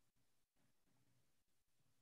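Near silence: a videoconference audio feed with no sound passed through.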